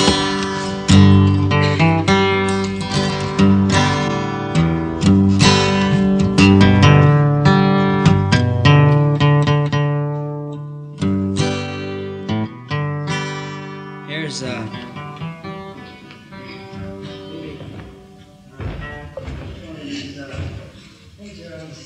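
An acoustic guitar is picked and strummed through a run of single notes and chords. The playing is loud for the first fourteen seconds or so, then quieter, and a short sharp noise comes near the end.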